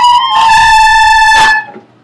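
School recorders playing in unison: a long, loud B that steps down to a long A about a third of a second in. Both notes are held for two beats, and the A stops about a second and a half in.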